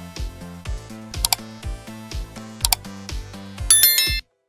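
Background music with a steady beat, overlaid with quick mouse-click sound effects, once about a second in and again nearly three seconds in, then a bright bell chime near the end: the sound effects of a like-and-subscribe end-screen animation.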